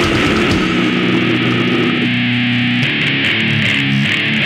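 Live slam death metal band with heavily distorted electric guitars. The drumming stops about half a second in, and the guitars ring on, holding sustained chords.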